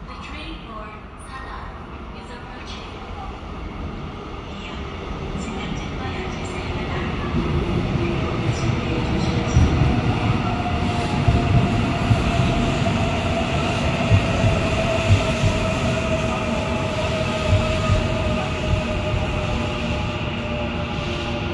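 A Seoul Subway Line 4 electric train pulls into the station behind the platform screen doors, growing louder over the first several seconds as it comes in. Through the rest it gives a steady whine that falls slowly in pitch as the train slows, with scattered thumps from the wheels on the rails.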